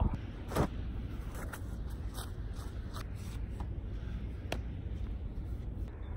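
Rustling and light clicks of a handheld phone being handled, over a steady low rumble.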